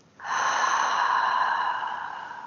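A person's long, audible breath, a slow, deliberate breath of an EFT breathing exercise. It starts a moment in, holds steady, then fades away.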